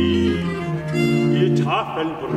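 Baroque chamber ensemble of violins, viola da gamba and chamber organ playing an instrumental passage of sustained chords that change every half second or so, with a higher string line rising near the end.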